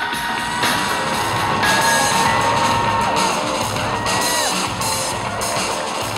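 Loud runway music playing, dense and continuous, with long held notes; one held note slides down in pitch about four and a half seconds in.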